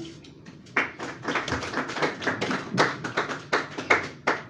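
Audience clapping in a small group, starting about a second in: separate sharp claps, several a second, rather than a dense roar.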